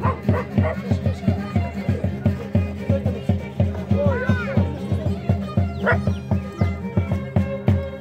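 Live carnival music: a drum keeps a steady beat of about four strokes a second under held violin notes. A dog yelps briefly about four seconds in.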